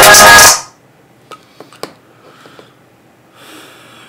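Electronic dance music played through a Kicker CS Series CSC65 6.5-inch coaxial car speaker, cutting off suddenly about half a second in. A few faint clicks follow, then a soft hiss.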